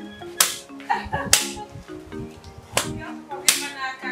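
Four sharp strikes on dry branches as wood is hacked and broken up, roughly a second apart, over background music.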